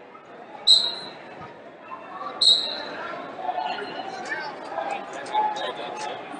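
Two short, loud referee's whistle blasts about two seconds apart. The first restarts the wrestling from neutral, and the second ends the period as the clock runs out. Voices and hall chatter carry on around them.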